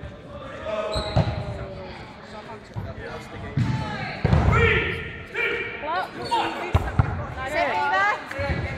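Players shouting and calling out, echoing around a sports hall, with a few sharp thuds of dodgeballs striking the wooden floor, one about a second in and another near the end.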